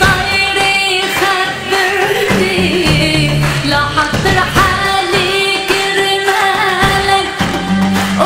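A woman sings an Arabic pop song into a handheld microphone, with instrumental accompaniment and a steady beat.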